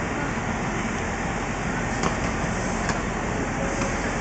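Steady running noise of a JR West 225 series train standing at a station platform with its doors open, with a few sharp clicks of passengers' footsteps as they step aboard.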